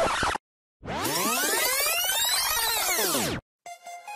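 Electronic music transition: a synthesized sweep effect rises and then falls in pitch for about two and a half seconds and cuts off suddenly. A new synth passage with steady held notes starts near the end.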